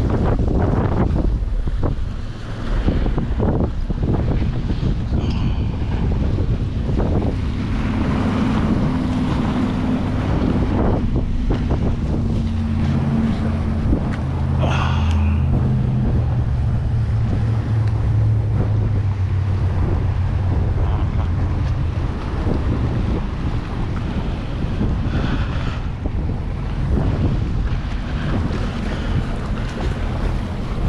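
Strong wind buffeting the microphone over choppy water lapping and splashing against the breakwater rocks, with a low steady hum through the middle stretch.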